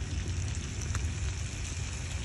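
Sea bass fillets sizzling faintly in butter in a cast-iron skillet over charcoal, with a few small ticks, under a steady low rumble.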